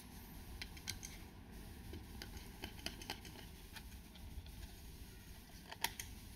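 Faint, scattered clicks and taps of fingers handling a 2.5-inch SATA SSD's metal case as it is pried open, with a sharper click near the end.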